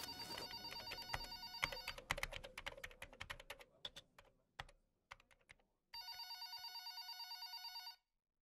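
Electronic telephone ringer sounding a pulsing, warbling ring, with a run of computer keyboard typing clicks under and after it that thins out and stops. After a short lull the phone rings again and cuts off abruptly.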